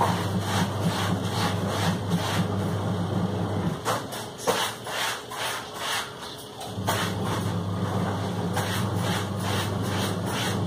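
A steady low machine hum that cuts out for about three seconds in the middle and then comes back, with irregular light clicks and ticks throughout.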